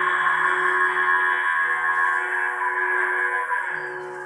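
A long-necked bowed string instrument playing long, sustained notes rich in overtones, several tones held at once; a low note drops out about halfway through and comes back near the end.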